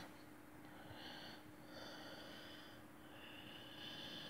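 Faint breathing through the nose, three soft breaths over a steady low room hum; very quiet.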